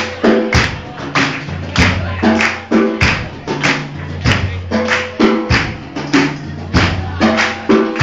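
Live band playing an instrumental passage: sharp percussion hits roughly twice a second over short repeated chords and a bass line, with no singing.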